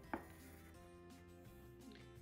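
Faint background music with sustained notes, and a single brief click just after the start.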